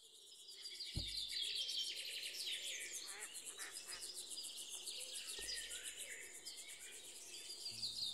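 Birds chirping and singing, many short calls and quick glides, over a fast, high, evenly pulsing buzz, fading in from silence at the start. Two soft low thumps, about a second in and again past the middle.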